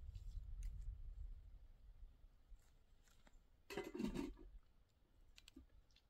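Faint, scattered clicks and small handling noises from someone working with things on dry ground, with one brief louder scrape or rustle about four seconds in.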